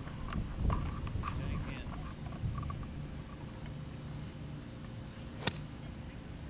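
A golf club striking a ball once, a sharp click about five and a half seconds in, over a steady low outdoor background.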